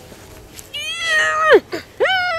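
A young child's high-pitched, drawn-out whining cry, beginning under a second in and lasting nearly a second before its pitch drops sharply away, as a boot is pulled onto their foot.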